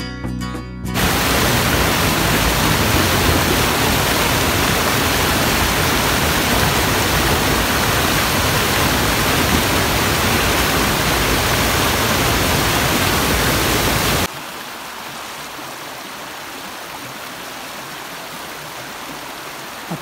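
Music ends about a second in, giving way to the loud, steady rush of a small waterfall cascading over rocks. About fourteen seconds in the sound cuts abruptly to a quieter, hissier flow of shallow stream water running over stones.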